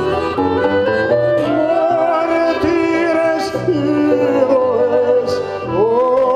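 Live folk music from a small acoustic ensemble: accordion and plucked strings playing, with a singing voice on long, wavering notes.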